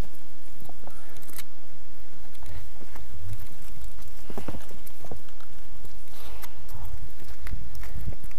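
Footsteps of trail runners climbing over rock boulders: irregular knocks and clicks of shoes striking stone over a steady low rumble.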